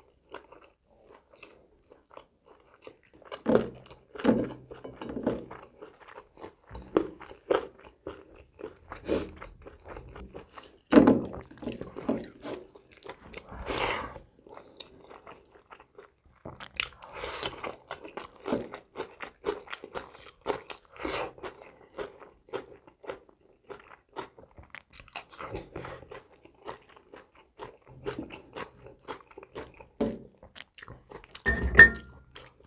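Close-miked chewing and crunching of food eaten by hand, including rice and crisp lettuce, as a run of irregular bites and small mouth clicks. The loudest crunches come around 4, 11 and 14 seconds in, with another busy stretch from about 17 to 21 seconds.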